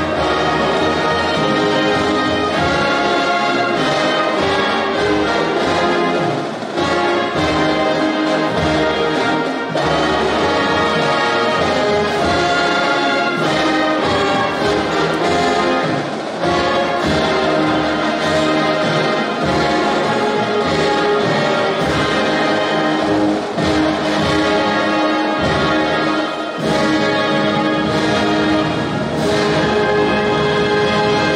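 High school concert band playing a piece under a conductor, brass to the fore, the ensemble sounding continuously with only slight dips between phrases.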